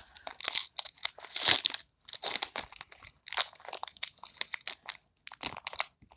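Foil booster pack wrapper of Pokémon trading cards crinkling and crackling in irregular bursts as it is torn open by hand.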